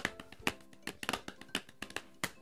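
Quiet background music of plucked guitar notes, each note struck sharply and left ringing.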